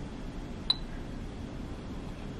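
Quiet room tone with a single short, sharp clink about two-thirds of a second in that rings briefly at a high pitch.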